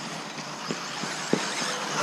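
Electric 4wd RC buggies with brushless motors running on a dirt track: a steady high whine and tyre noise, with two faint knocks, about two-thirds of a second in and again past a second.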